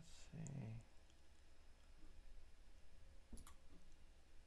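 Near silence at a computer, broken by a quick pair of clicks about three and a half seconds in, with a short murmur of voice at the very start.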